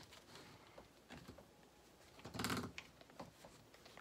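Faint rustling and scraping of a corrugated shop-vac hose being handled and pushed onto the dust shoe's 2-1/2-inch port, with one brief louder rub about two and a half seconds in.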